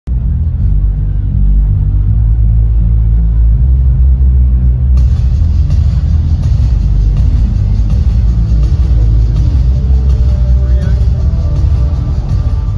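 Loud, bass-heavy music over an arena's PA system, with crowd noise, heard through a phone microphone that the low end overloads. The sound suddenly brightens about five seconds in.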